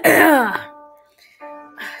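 A man clears his throat loudly, the rasp sliding down in pitch over the first half second, over a backing music track of held tones; a new chord of held tones enters about one and a half seconds in, just before rapping begins.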